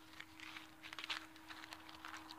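Faint rustling and a few small clicks of a tin of air-gun pellets being handled and slipped back into a fabric zip pouch, over a faint steady hum.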